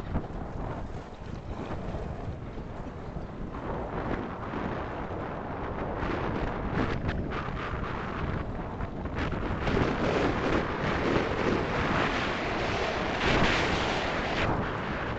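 Wind buffeting the microphone over the rumble and rattle of a gravity kart's tyres and frame running fast over loose slate gravel, growing louder and rougher in the second half.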